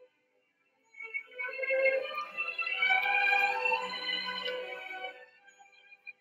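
Music with held, sustained tones. The phrase begins about a second in and fades out near the end.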